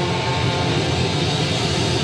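A ska band playing live, with trumpet and trombones over electric guitar, bass and drums, in a loud, dense room recording.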